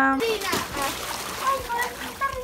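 Water splashing in an inflatable above-ground pool as a child kicks and moves through it, with children's voices around it. A long held call from a child ends just after the start.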